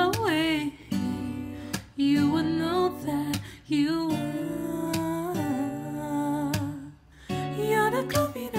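A man singing a slow R&B ballad over acoustic guitar accompaniment, with vibrato on held notes and short breaks between phrases.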